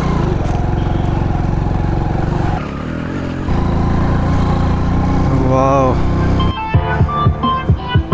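Motorcycle engine running as the bike pulls up a steep climb, the bike straining, with a brief dip in the engine sound a little under three seconds in. Near the end a short voice is heard, then music with a steady beat.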